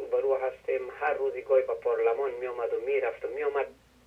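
Speech only: a caller talking over a telephone line, the voice thin and narrow as phone audio is, with a brief pause near the end.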